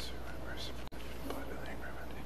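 Faint whispered speech over a steady low electrical hum, with a momentary cut-out in the audio just before one second in.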